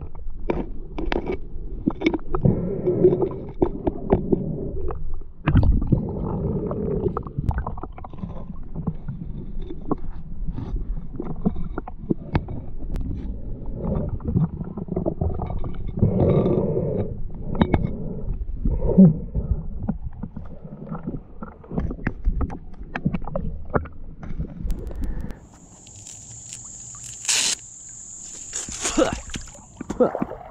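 Underwater creek sound picked up by a submerged camera: muffled low rumbling and gurgling water movement with scattered sharp clicks and knocks from stones and handling. About 25 seconds in, the muffled sound drops away as the camera comes up out of the water, and two short splashes follow near the end.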